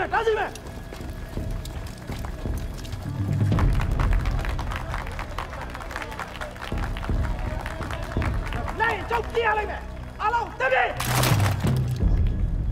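Film soundtrack: low, sustained music score under shouted commands and voices, with a short, sharp clatter near the end.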